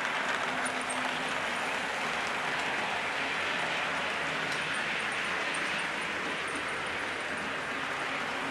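Model trains running on a layout: a steady rolling noise of small wheels on track and motors, with faint scattered ticks.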